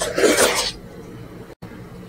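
A loud, wet, hissy burst of close-miked mouth and hand noise lasting under a second, as a handful of rice soaked in jameed sauce is pushed into the mouth by hand. The sound drops out for a split second just after the middle.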